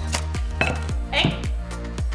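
A chef's knife chopping crisp cooked bacon on a wooden cutting board, with repeated crunching cuts, over background music with a steady beat.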